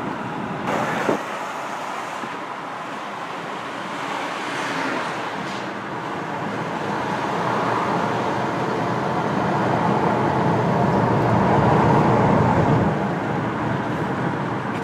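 Steady road and tyre noise of a 2016 Kia Sorento on the move, heard from inside the cabin; it grows gradually louder through most of the stretch and eases off near the end.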